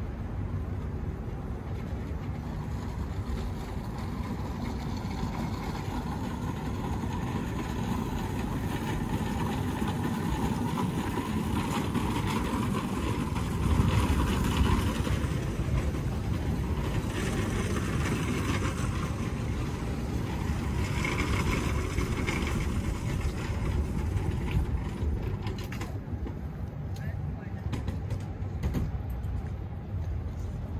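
Outdoor street ambience: a steady low rumble of traffic, with indistinct voices of passers-by around the middle and a brief swell in loudness about halfway through.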